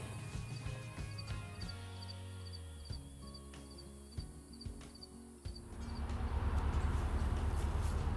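Soft background music with held notes, which stops about five and a half seconds in. Then comes a steady outdoor noise with a low rumble.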